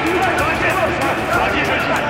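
Several voices crying out over one another in alarm, with a low dramatic music bed underneath.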